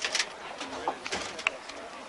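Outdoor field ambience of indistinct, wavering voices, broken by a few sharp clicks and knocks, the loudest just after the start and about halfway through.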